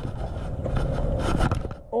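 Rough, continuous scraping and rustling of a baitcasting rod and reel being handled and cranked during a hookset on a bass, ending just under two seconds in.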